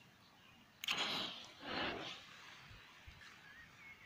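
RDG smoke grenade's igniter pulled and the charge catching with a hissing rush about a second in, lasting about a second and a half.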